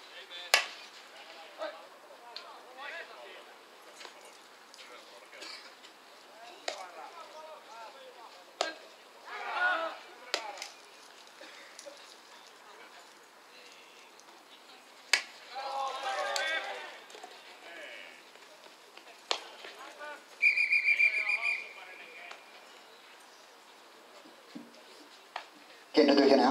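Open-air pesäpallo field sound: scattered sharp knocks and a few distant shouts from players, then a single whistle blast of about a second and a half, about three-quarters of the way through, the loudest sound.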